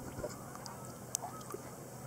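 Water lapping and splashing right at a camera held at the lake surface as a swimmer moves, with a few sharp drip-like clicks, the loudest a little past a second in.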